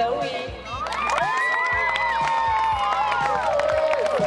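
A group of young girls cheering and screaming together in high-pitched voices, starting about a second in and lasting about two seconds.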